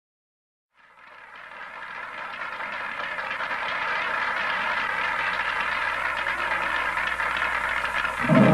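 Audience applause, fading in about a second in and then holding steady.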